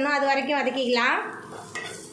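A voice speaking for about the first second, then a wooden spatula stirring and scraping frying masala around a nonstick kadai, with a light sizzle and small clicks of the spatula on the pan.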